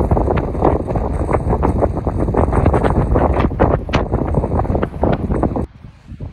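Strong wind buffeting the microphone: a loud, rumbling, gusty roar that stops abruptly near the end.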